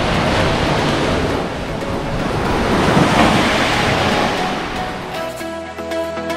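Small sea waves washing onto a sandy beach, swelling to their loudest about halfway through. Music with steady notes comes in near the end.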